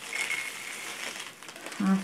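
A plastic bag crinkling as soy wax pellets are tipped out of it into a silicone cup.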